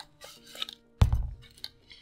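An M9-style bayonet and its scabbard being handled, with light clicks and one sharp knock about a second in.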